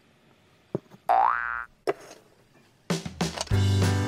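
A short cartoon-style 'boing' sound effect, rising in pitch for about half a second, comes about a second in, between two light clicks. Background music starts about three seconds in.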